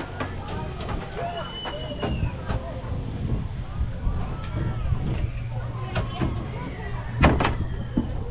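Spinning balloon-gondola amusement ride running, its machinery giving a steady low hum with scattered clicks and clunks and one loud knock about seven seconds in, with riders' voices around it.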